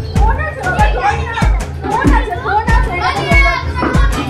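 Music with a steady bass beat, about one and a half beats a second, with children's voices calling and playing over it.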